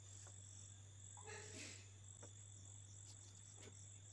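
Near silence: faint room tone with a steady low hum and a high whine. A few light taps and a brief rustle come as the plastic ruler is moved across the drawing paper.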